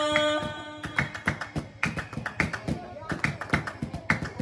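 Didong Gayo circle striking a rhythm with their hands: sharp claps at about three to four a second. A long held sung note dies away just before the claps begin.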